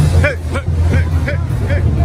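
Crowd voices and chatter over loud, bass-heavy music from a sound system, with a steady deep low end.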